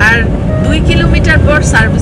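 Steady low rumble of road and engine noise inside a moving car's cabin, under a woman talking.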